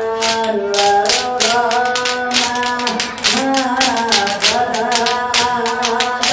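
A group of men singing together, holding long notes, over steady rhythmic hand clapping at about three claps a second.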